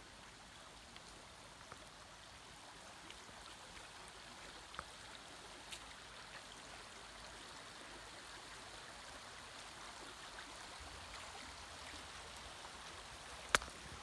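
Shallow creek running over a pebbly bed: a faint, steady rush of water that slowly grows louder. A single sharp click near the end.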